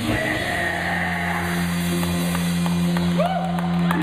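Live rock band's final chord ringing out: electric guitar and bass held on steady notes after the drums stop at the end of the song. A few faint clicks, and a short swooping rise and fall in pitch about three seconds in.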